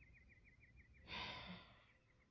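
A woman's long, breathy, exasperated sigh about a second in. Faint rapid chirping runs in the background.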